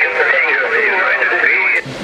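A distant station's single-sideband voice coming through a Yaesu FTdx5000 HF transceiver's speaker on the 10 m band. It sounds thin, with nothing above about 2.5 kHz, and no words can be made out. It stops a little before the end.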